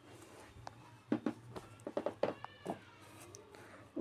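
Metal spatula scraping and knocking against an iron kadhai as chopped onions and green chillies are stirred while they fry. About halfway through there is a brief high squeal that falls in pitch.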